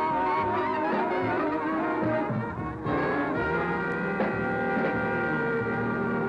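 Jazz horn section of saxophones and trumpet playing the closing bars of a slow blues, settling about halfway through into a steady held chord.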